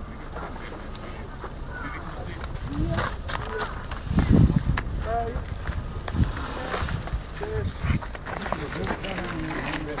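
Indistinct voices talking outdoors, with a few sharp clicks and a loud, dull low rumble about four seconds in.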